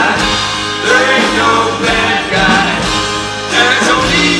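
Live band music: a strummed 12-string acoustic-electric guitar over bass and drums, with a melody line rising and falling over the top.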